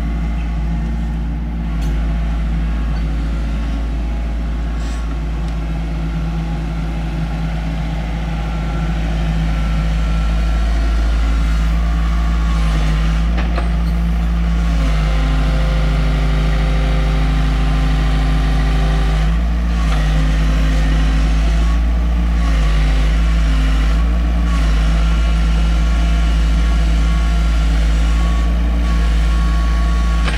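Mini excavator's diesel engine running steadily under hydraulic load as the machine works its arm and swings. It gets louder about nine seconds in, and the engine note shifts a few times after that.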